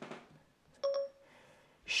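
Siri's short electronic start-listening chime on an iPad running iOS 6, sounding once about a second in. It is the signal that Siri is ready to take a spoken request.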